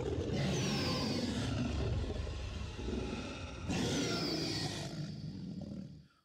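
Dinosaur roar sound effect: a long, rough, rumbling roar that fades, then a second roar about four seconds in.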